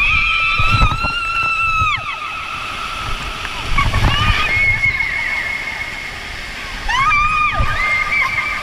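Riders screaming on a water slide, in long held high-pitched cries: one at the start, a fainter one midway and another near the end, over water rushing and sloshing beneath them in the enclosed tube.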